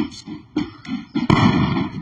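A few light clicks, then a sudden loud bang about a second and a half in that trails off over half a second: a firework going off.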